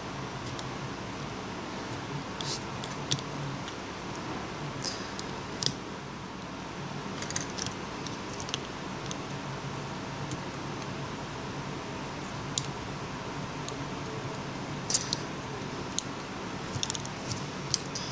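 Scattered light clicks and ticks of small repair tools and fingers handling the opened iPhone 5's internal parts, over a steady low background hum.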